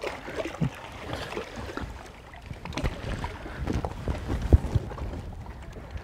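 Water splashing and lapping as a largemouth bass is held in the lake beside the boat for release, with irregular small splashes and knocks, the sharpest about four and a half seconds in.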